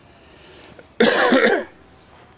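A single cough, loud and about half a second long, about a second in.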